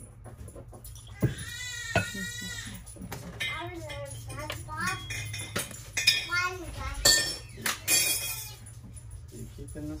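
A young child's voice: a long, wavering, drawn-out vocal sound about a second in, followed by shorter babbling sounds, with a few sharp clicks in between.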